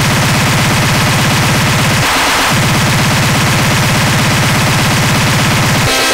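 Speedcore electronic music: a loud, very fast pulse of distorted kick drums, too quick to hear as separate beats, with a half-second break about two seconds in.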